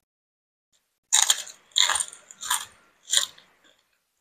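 Crunching bites and chewing of crispy fried salted fish: four loud crunches, about one every 0.7 seconds, starting about a second in.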